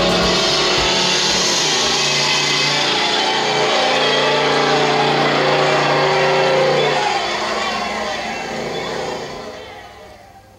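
A recorded car sound effect, an engine running and accelerating, played from a vinyl record together with the last of the song's music. It fades out over the final three seconds as the record ends.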